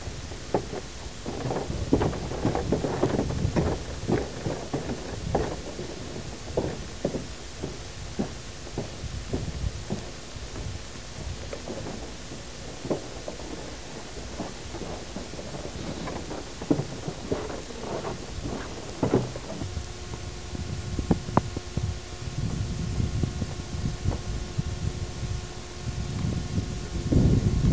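Wind buffeting a camcorder's built-in microphone, a low uneven rumble broken by irregular knocks from handling the camera while walking. A faint steady hum of several tones comes in about twenty seconds in.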